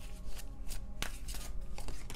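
Tarot cards shuffled by hand: light papery rustling and slapping, with a sharp card snap about a second in.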